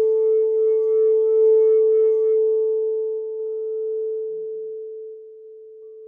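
Crystal singing bowl ringing with one steady low tone and fainter overtones, slowly fading over the seconds as the higher overtones die away first.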